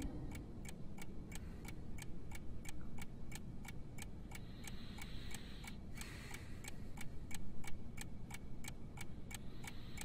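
A clock ticking steadily, about three ticks a second, over a faint low drone. A soft hiss swells briefly about halfway through.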